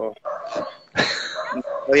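A dog barking several times, mixed with bits of speech.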